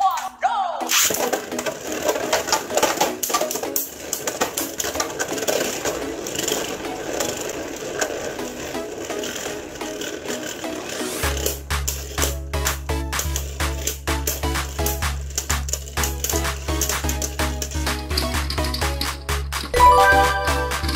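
Beyblade Burst spinning tops whirring and knocking together in a plastic stadium under background music. About eleven seconds in, a music track with a heavy, regular bass beat comes in and dominates.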